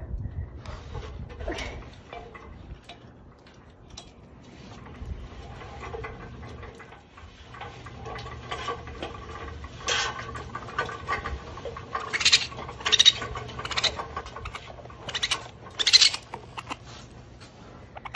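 Handling noise from a cloth bag holding baby raccoons and an aluminium ladder: irregular rustling with sharp clatters and knocks, loudest in the second half, and faint animal sounds from the babies.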